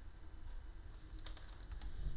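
A quick run of about five light computer-keyboard clicks a little past halfway, over a faint low hum.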